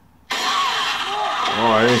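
Movie trailer soundtrack: a sudden loud rush of noise cuts in about a third of a second in and holds steady, with a man's dialogue over it.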